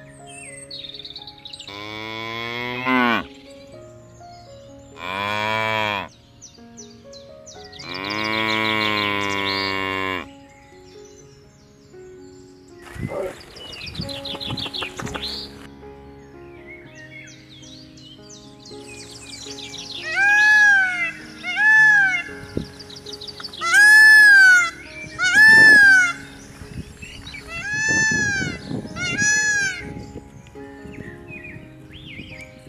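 Cattle mooing: three long, deep moos in the first ten seconds, the third held about two seconds. In the second half a run of about eight shorter, higher rising-and-falling calls, about one every second and a half, is the loudest thing, with a faint steady high whine over it.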